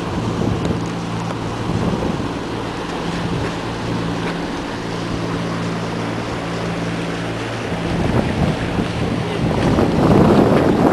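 A sailing yacht's engine running at a steady low hum with the wake's water rushing past. Wind buffets the microphone, and the buffeting grows stronger near the end.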